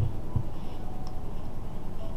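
Light handling of ceramic coffee-reading crockery on a table: a cup set down and a saucer moved, with a few faint short clicks and rubbing over a low steady room rumble.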